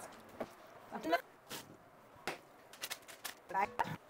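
A series of light clicks and knocks from cookware being handled on a kitchen counter, with two brief wordless vocal sounds, one about a second in and one near the end.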